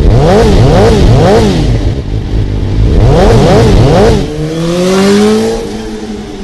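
Motorcycle engine sound effect revved in two runs of three quick blips, the pitch jumping up and falling back each time, then one long rising rev near the end.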